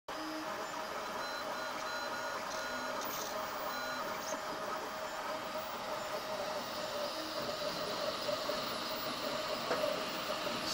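Home-built Makeblock 3D printer running, its stepper motors giving short whining notes at changing pitches as the axes move, mostly in the first few seconds, over a steady hum.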